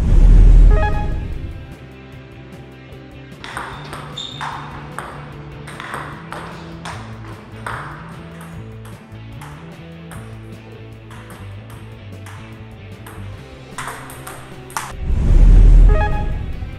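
Table tennis ball clicking off paddles and the table in a rally of between-the-legs trick shots, over background music with a steady bass line. A loud low boom sounds at the start and again about a second before the end.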